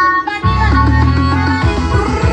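Loud music played through car-mounted 'paredão' sound-system speaker walls. The heavy bass drops out at the start and comes back in strongly about half a second in, under a melody line.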